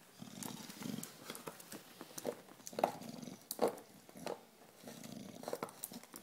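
English bulldog gnawing a plastic bottle: sharp plastic cracks and clicks come every second or so, loudest near the middle. Between bites there are stretches of low, breathy snuffling from the dog.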